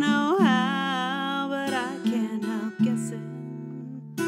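Acoustic guitar song: a singing voice holds a long, wavering note over strummed acoustic guitar chords, and the voice drops out about two seconds in, leaving the guitar alone.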